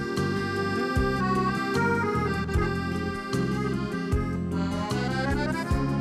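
Instrumental intro of a Russian pop song: an accordion plays the melody over a steady bass line and a drum beat a little more than once a second, with a rising run of notes near the end.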